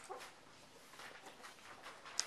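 Near silence: quiet room tone, with a brief faint sound right at the start and a few faint ticks.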